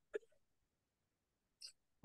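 Near silence in a pause between speech, with a brief faint throat or breath sound just after the start and a short faint hiss near the end.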